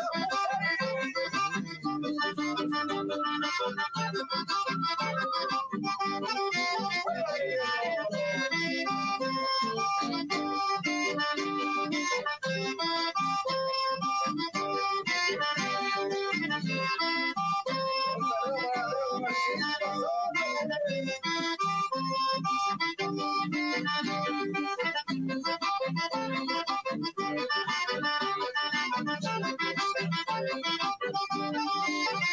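Button accordion playing a lively folk tune with strummed acoustic guitar accompaniment, continuous throughout.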